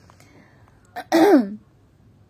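A woman clearing her throat once, briefly, about a second in, just after a small click.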